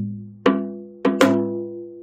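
Janggu (Korean hourglass drum) struck with a stick: one stroke about half a second in, then a quick double stroke about a second in, each ringing with a clear pitch and dying away. These are the right-hand 'da gi-dak' of the basic practice figure 'gung-gung da gi-dak'.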